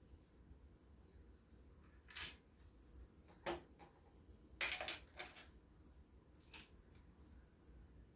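Faint handling noise: a few light, separate clicks and clinks spread over several seconds, the sharpest about three and a half seconds in.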